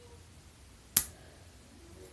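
A single sharp click of small plastic Lego pieces being handled close to the microphone, about a second in, against quiet room tone.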